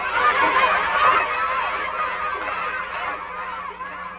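Many schoolchildren's voices at once, a crowd of high young voices growing quieter toward the end.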